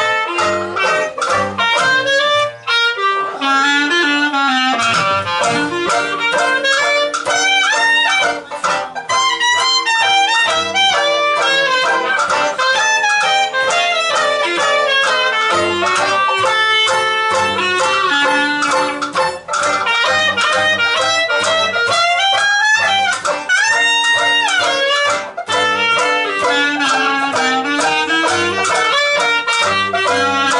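Traditional jazz band playing, with the clarinet carrying the lead line over banjo, double bass and drums.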